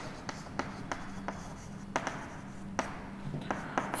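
Chalk writing a word on a green chalkboard: a string of irregular sharp taps and short scratches as each stroke of the chalk hits and drags on the board.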